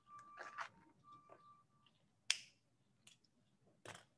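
A few faint, sharp clicks, the loudest about two seconds in, over a quiet background; a faint thin tone sounds on and off during the first two seconds.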